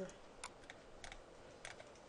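Faint clicking at a computer: a handful of short clicks, two of them close together about half a second in.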